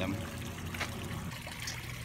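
Small garden-pond waterfall spilling into a koi pond, a steady splashing trickle of water.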